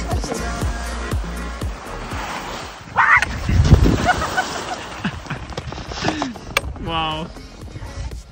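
Background music with singing. About three seconds in, a loud rush of skis scraping and sliding on packed snow as a skier falls, and near the end a short wavering voice.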